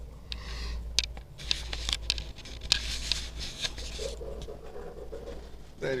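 Handling noise: scratchy rustling with several sharp clicks, as the sheet of paper and the camera are moved about, over a steady low hum; a softer murmur follows in the last couple of seconds.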